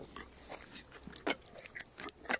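Faint, scattered clicks and smacks of a horse's lips and mouth, close up, as a hand holds the lips apart. The sharpest click comes a little past halfway.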